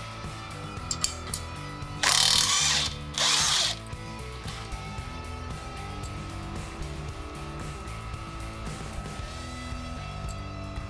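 Cordless impact wrench running in two short bursts, about two and three seconds in, spinning out the bolts that hold the wheel bearing carrier to the trailing arm.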